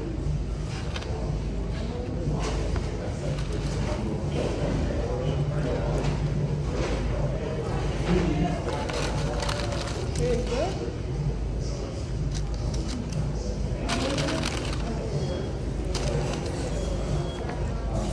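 Restaurant din: indistinct chatter and background music, with scattered short clicks and rustles and a louder rustle about fourteen seconds in.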